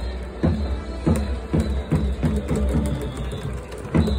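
Cheering-section drum beating a steady rhythm, about two strikes a second, over the noise of a large stadium crowd.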